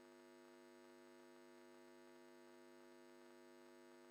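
Near silence, with only a faint steady mains hum.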